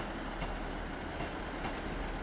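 ScotRail passenger train running past as it pulls out of the station: a steady rolling noise from wheels and running gear, with a few faint clicks as the wheels cross rail joints.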